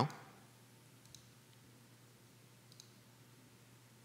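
Quiet studio room tone with a faint low hum, and two small faint clicks, about a second in and again near three seconds in.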